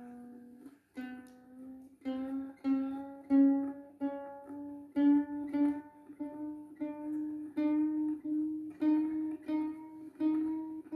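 Ukulele string repeatedly plucked while its tuning peg is turned, the single note climbing gradually in pitch: a freshly fitted, still slack string being brought up to tune.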